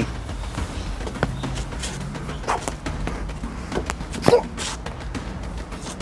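LARP swords knocking against each other in a sparring exchange: a few short, sharp knocks spaced a second or so apart, the loudest about two-thirds of the way through.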